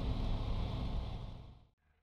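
Light aircraft's engine and propeller running steadily at ground idle, heard from inside the cockpit as a low hum while the engine is still warming up. The sound fades out to silence about a second and a half in.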